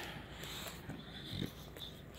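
A dog breathing quietly right at the microphone, with soft irregular snuffly sounds.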